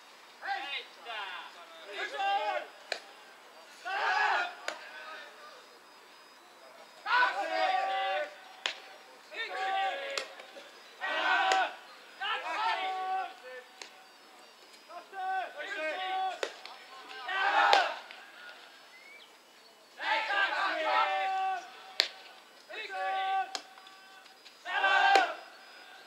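Pesäpallo players shouting calls and encouragement across the field in short bursts every second or two, with a few sharp knocks in between.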